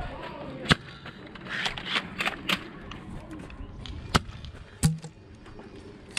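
Sharp cracks and clacks from a spring-powered lever-action foam dart blaster. The loudest crack comes about a second in, a few fainter clacks follow around two seconds, and two more come near the end.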